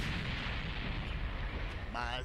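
Animated volcano eruption sound effect: a continuous dense low rumble with crackle.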